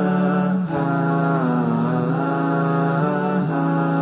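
A voice humming a vocal jingle: long held notes that bend slowly from one pitch to the next, with no beat or percussion.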